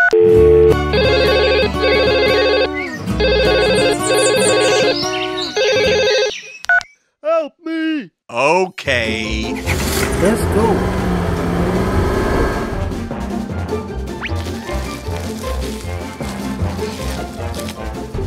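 A phone ringtone rings in repeated bursts of the same tune for about the first six seconds, followed by a few short gliding cartoon sounds. From about nine seconds in, background music with a steady beat plays.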